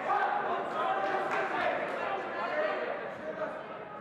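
Coaches and spectators shouting over one another in a large, echoing hall, with no single voice standing out.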